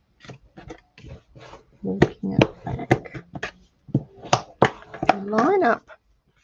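Cardstock being handled and folded by hand on a cutting mat: a run of sharp paper taps, flicks and rustles as the card's edges are lined up for the fold. A voice speaks briefly near the end.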